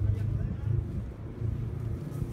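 Outdoor street ambience: a steady low rumble, with wind on the microphone.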